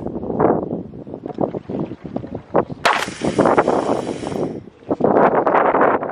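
Wind buffeting the microphone, then about three seconds in a sharp pop as a pressurized soda-bottle rocket lets go of its launch pad, followed by a high hiss of escaping pressure lasting about a second and a half.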